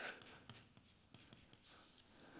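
Chalk writing on a chalkboard: faint taps and scratches as letters are chalked in large strokes.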